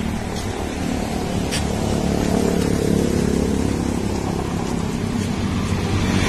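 Motor vehicle engine running with road noise while travelling along a street. The engine note grows a little louder about two seconds in.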